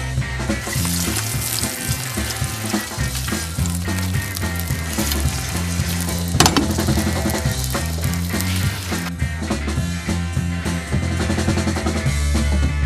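Strips of pancetta sizzling as they fry in hot oil in a pot, the sizzle thinning near the end. A single sharp knock about halfway through.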